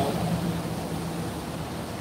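Steady city street background: traffic noise with a low, steady hum running under it.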